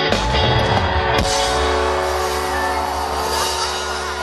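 Live rock band playing, recorded from the audience: a hit at the start and another about a second in, then a long held chord of guitar and drums ringing on.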